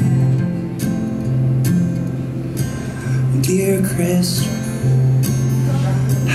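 Fingerstyle acoustic guitar with a bowed cello holding long low notes underneath, in a slow folk song.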